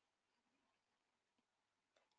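Near silence: the sound drops out completely in a pause between spoken sentences.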